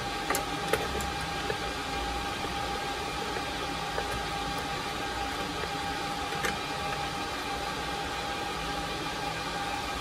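A few small clicks and taps of a PCIe expansion card and its metal bracket being worked into a slot in a PC case, several close together at the start, then one about four seconds in and another about six and a half seconds in. A steady hiss with a steady high hum underlies them throughout.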